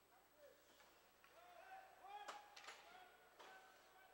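Near silence with faint distant voices calling out in the arena, one drawn-out call in the middle, and two faint sharp clicks a moment apart.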